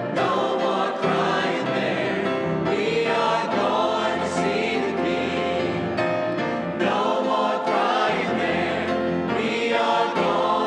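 Church choir singing.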